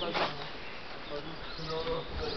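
Faint voices talking in the background, with an intermittent low buzz.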